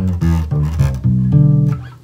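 Electric bass played alone, fingerstyle: a run of short plucked low notes, then a louder held note that fades away near the end.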